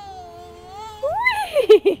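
A high-pitched 'whee!' that rises and falls about a second in, followed by quick, choppy speech; before it, a faint, held voice-like tone.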